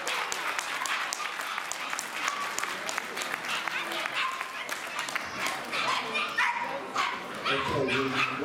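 Audience clapping in a large hall while miniature bull terriers are led around the ring. Dogs bark in short, pitched calls in the second half.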